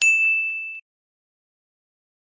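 A single bright electronic ding sound effect, a clear high chime that rings and fades over less than a second, then cuts off.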